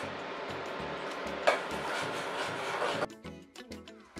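Background music with a steady beat over a metal spoon stirring and scraping in a pot of cooking semolina; the stirring noise cuts off suddenly about three seconds in.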